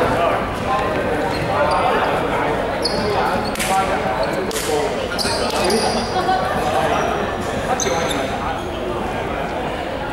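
Players' voices calling and chatting in an echoing indoor sports hall, with a few short squeaks of sneakers on the court floor and a couple of sharp knocks partway through.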